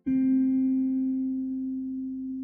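Slow, soft instrumental guitar music: a single plucked guitar note sounds just after the start and rings on, slowly fading.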